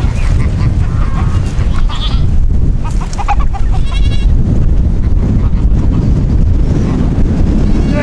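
Strong wind buffeting the microphone in a steady low rumble, with goats bleating a few times, faint under the wind.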